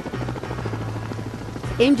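Helicopter rotor sound effect, a dense steady chopping, over a low bass note from a music bed; a voice comes in near the end.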